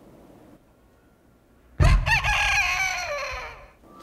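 A comedic sound effect about two seconds in: a thump, then one long pitched animal-like call that wavers and then slides down in pitch, lasting about two seconds.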